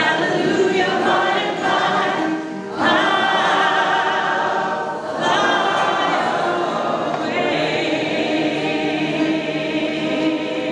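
Live gospel singing: a woman's lead voice with other voices joining in on long held notes, over a resonator guitar, with short breaks between phrases.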